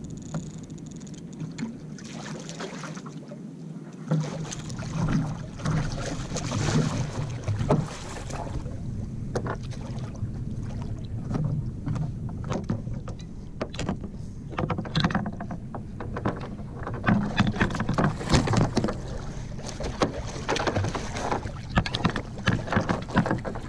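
Water splashing and sloshing beside a plastic sit-on-top kayak as a hooked smooth-hound shark is fought and hand-lined alongside, with irregular knocks and clatter on the hull and gear, thickest in the last few seconds.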